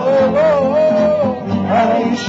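A tamburica band playing live: a man sings a wavering melody over strummed and plucked strings and a bass line. He ends one phrase and starts the next near the end.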